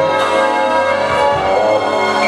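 Instrumental passage of a karaoke backing track for a Mandarin pop ballad, played loud over the venue speakers, with no voice singing over it.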